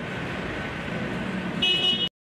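Steady street traffic noise, with a brief high-pitched toot, like a horn, about a second and a half in.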